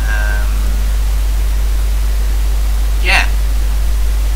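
Steady low electrical hum and hiss from the recording microphone, with a short hummed vocal sound at the start and a brief breath-like hiss about three seconds in.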